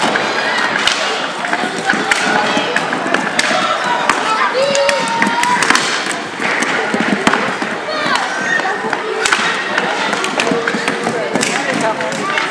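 Many sharp clicks and knocks of hockey sticks and puck on a hard gym floor during a children's inline hockey scramble, over a steady background of voices and shouts.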